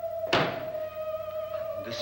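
A theremin in the film score holds one wavering note, with a single sharp thunk about a third of a second in that stands out above it.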